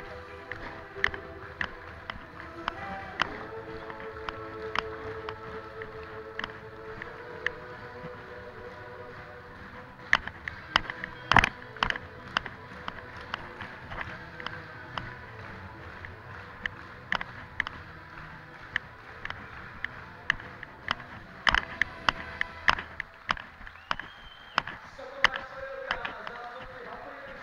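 Live music playing in an indoor show hall, with sustained chords. Over it come frequent sharp clicks and knocks, bunching about ten to twelve seconds in and again after twenty seconds, the loudest one about eleven seconds in.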